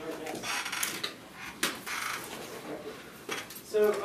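Low conversation around a meeting table in a small room, mixed with papers rustling and being handled, and a few light knocks.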